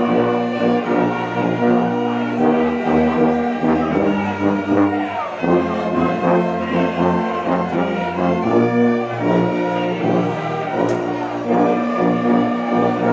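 Church orchestra of brass and other instruments playing a hymn in long held chords, with a tuba close by carrying the bass line.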